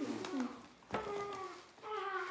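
Wordless human vocal sounds, short gliding murmurs and a drawn-out 'ooh', with a single sharp click about a second in.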